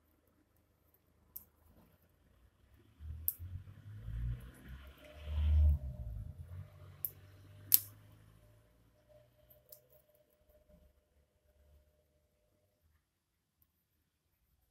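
Handling noise from fingers turning a wristwatch and its leather strap close to the microphone, with rumbling rubs in the middle and a few sharp clicks, the loudest about eight seconds in.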